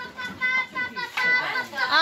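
Children's voices: several kids chattering and calling out over one another, with a high child's shout near the end.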